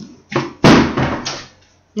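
Hard clear-plastic storage container dropped, hitting with a sharp crash a little over half a second in and clattering briefly before it dies away.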